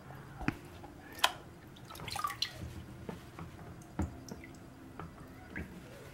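Water dripping and splashing lightly in a plastic gold pan as it is handled: a few scattered drips and small splashes, the sharpest about a second in.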